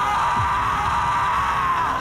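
A man's long, loud scream of pain, held on one high pitch, sagging slightly and cutting off at about two seconds.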